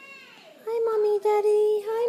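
A young child's voice, starting under a second in: a high, long, sing-song vocalisation held on nearly one pitch and broken a few times.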